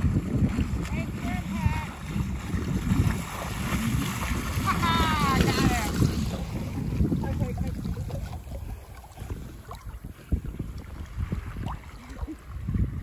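Wind buffeting the microphone and water washing around a small sailboat on choppy water. The wind rumble is heavy through the first half and eases later. About five seconds in there is a brief high-pitched vocal sound.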